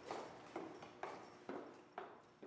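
Footsteps on a concrete corridor floor: sharp, evenly spaced steps, about two a second.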